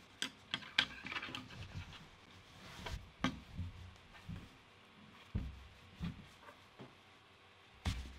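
Hands working fabric on a wooden table: soft rustling and scattered light knocks and clicks as a jersey drawstring is pulled through a cotton mask's channel with a small hook.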